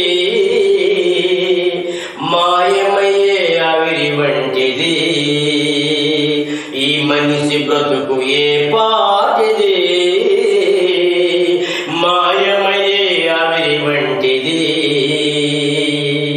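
A man singing a slow devotional song in long, held, ornamented phrases, with short breaks between phrases, over a steady low drone and instrumental accompaniment.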